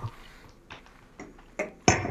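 Faint mouth clicks of someone tasting a whisky, then a louder short knock near the end as a nosing glass is set down on a wooden barrel top.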